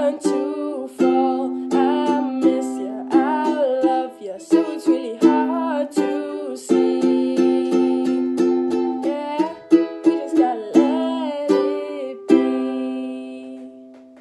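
Ukulele strummed in a steady rhythm under a woman's singing voice. A final chord is struck near the end and left to ring out and fade.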